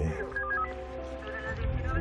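Documentary background music in a gap between words: held, steady low synth notes, with a few short, high beeping notes about half a second in and again a second later.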